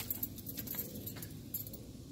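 Keys on a small keyring jingling and clicking as they are handled, a few light clicks scattered through.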